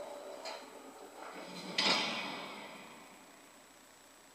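A door clicks about half a second in, then shuts with a bang a little before the middle. The bang echoes for about a second.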